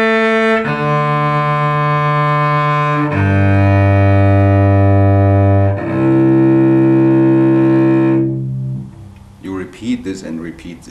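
Cello bowed on its open strings, one long whole-bow stroke per string. A held note ends about half a second in, then three more follow, each about three seconds long: the first two step lower in pitch and the last is a little higher. The playing stops about a second before the end.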